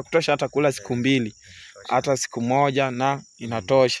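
A man talking, with a steady high-pitched trill of crickets running continuously underneath.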